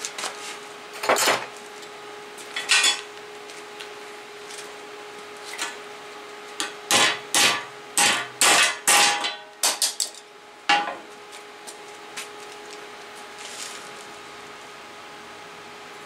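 Hammer blows folding a fusion-welded strip of 1 mm sheet steel in half over the edge of a steel welding table, a bend test of the weld. There are about a dozen strikes at an uneven pace: a few spaced out at first, then most of them bunched together in the middle.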